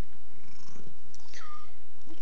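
Tabby cat purring close up: a low, steady rumble.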